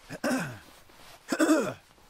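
A person's voice making two short non-word vocal sounds about a second apart, each falling in pitch, like someone clearing their throat.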